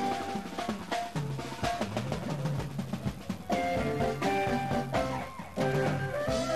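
Congolese ndombolo dance-band music: a drum kit plays a busy run of strokes over a moving bass line. Pitched melodic instruments come back in about three and a half seconds in.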